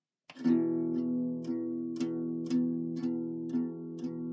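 Acoustic guitar starting to play about a third of a second in, struck in a steady rhythm of about two strokes a second, the chord ringing on between strokes: the instrumental opening of a song.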